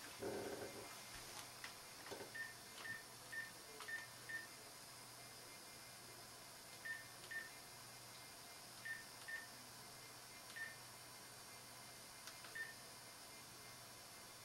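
Cell phone keypad beeping as a number is dialled: about eleven short, identical high beeps, one per key press, in a quick run of five, then pairs and singles with pauses between. Faint rustling and clicks of handling at the start.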